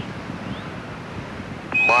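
Steady radio-loop hiss, then near the end a short high beep: a Quindar tone keying the start of a Mission Control transmission to the spacecraft, just before a voice comes in.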